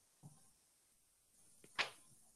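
Near silence: room tone in a pause between speech, broken by one short, faint click near the end.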